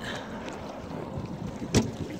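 Steady wind and water noise on an open boat, with one short, sharp knock about three-quarters of the way through.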